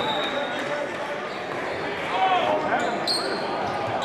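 Basketball dribbled on a hardwood gym floor during live play, over steady chatter from a crowd in a large echoing gym. A few short high squeaks come about two to three seconds in, typical of sneakers on the court.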